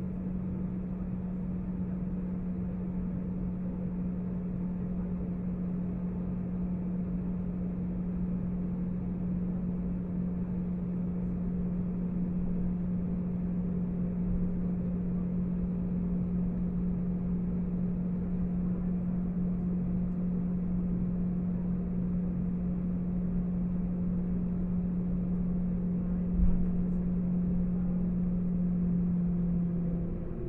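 Cabin noise of an Airbus A320 taxiing: the jet engines' steady drone with a low steady hum, heard from inside the cabin. A single thump sounds near the end.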